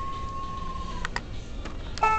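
A steady electronic tone that cuts off about halfway through, with a few sharp plastic clicks from a battery-operated Halloween decoration being handled and switched.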